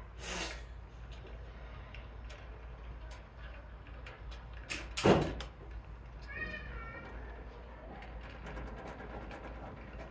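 Small clicks and rustles of wires and plastic wire nuts being twisted together by hand, over a steady low hum. A sharp thump about five seconds in is the loudest sound.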